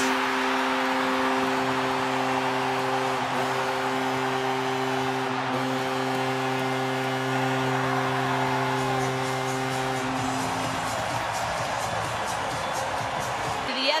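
Arena goal horn sounding one long steady low blast that stops about eleven seconds in, over a cheering hockey crowd celebrating a home goal.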